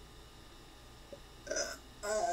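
Faint room tone, then one short, non-word vocal sound from a person's voice near the end.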